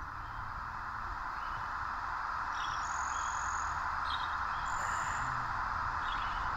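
Birds chirping in short bursts every second or two, with a few brief high whistled notes, over a steady background hiss.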